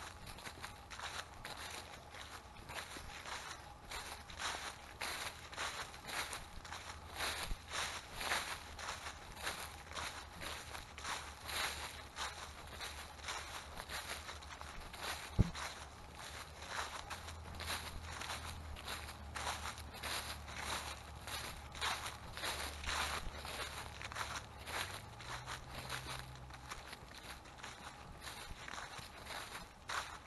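Footsteps crunching through dry fallen leaves, about two steps a second. One sharp click about halfway through.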